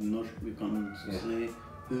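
A man talking in conversation, with music playing underneath.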